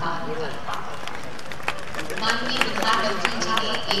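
A voice speaking over a public-address system to a large outdoor crowd, clearer in the second half, with scattered short clicks and crowd noise underneath.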